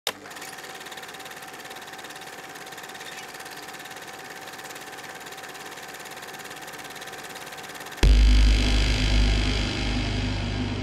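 Eerie horror-style sound design: a steady electrical-sounding buzz with a fast flutter, then about eight seconds in a loud, deep boom that opens into a low, dark drone.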